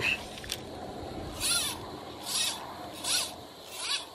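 Fly line stripped in by hand in four short pulls a little under a second apart, each a rasping zip of line through the rod guides.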